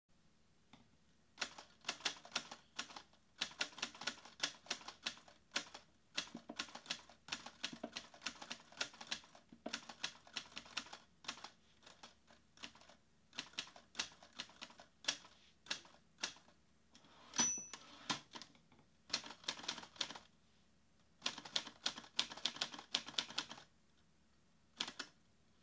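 Manual typewriter keys clacking in quick, irregular runs with short pauses between them. A typewriter bell dings once, about two-thirds of the way in, and is the loudest sound.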